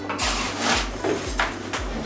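A hand scoop scraping and digging into wet concrete mix in a plastic bucket, twice: a longer scrape in the first second and a shorter one near the end.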